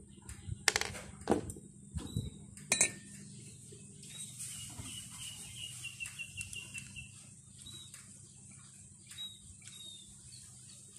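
Small metal motorcycle parts and hand tools knocking and clinking against a work board, four sharp knocks in the first three seconds. Then a bird calls in a quick falling series of notes, with a few faint chirps later.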